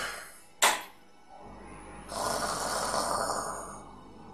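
Dramatic film score: one sharp percussive hit about half a second in, then a hissing swell that rises about two seconds in and fades near the end.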